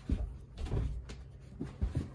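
A few dull thumps of a person moving on carpeted stairs: one at the start, a couple around the middle, and two close together near the end.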